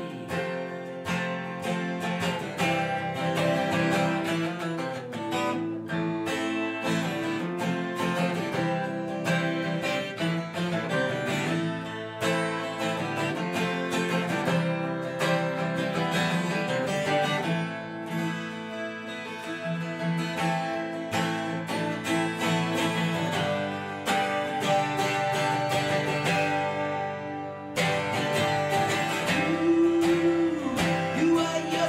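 Twelve-string acoustic guitar strummed steadily in an instrumental passage of a song, with a brief pause near the end before the strumming picks up again.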